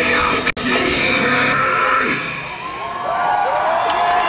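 Live rock band with distorted guitars and drums playing the last loud bars of a song, with a brief dropout in the recording about half a second in; the band stops about two seconds in and a crowd cheers, whoops and yells.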